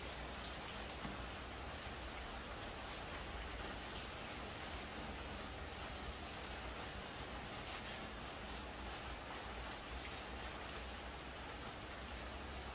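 Steady hiss of background noise, with faint small clicks of metal coins being handled and stacked on a table.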